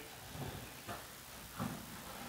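Quiet room tone with a couple of faint handling sounds about a second in and again past the middle, as a shop vac's plastic lid is unlatched and lifted off.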